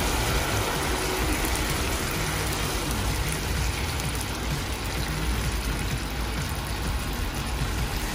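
Steady simmering noise from a pan of chicken adobo on a gas stove while coconut milk is poured into it, an even hiss with a low rumble underneath.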